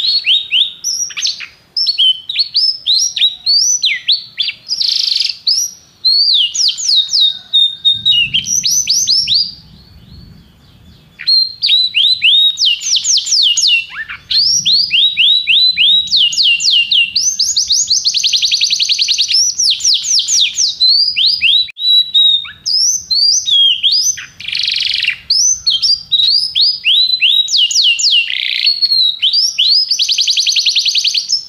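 Domestic canary singing a long song of fast trills: quick runs of repeated down-sweeping notes that change speed and pitch from phrase to phrase, with a short lull about eight seconds in before the song resumes.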